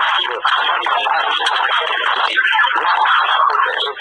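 A recorded conversation played back: voices that are unclear and hard to make out, sounding thin, with the treble cut off.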